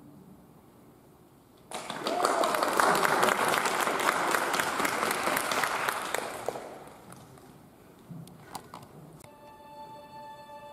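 An audience in a school auditorium applauds the end of an orchestra piece: the clapping starts suddenly about two seconds in and dies away after about five seconds. A few knocks follow, and music begins just before the end.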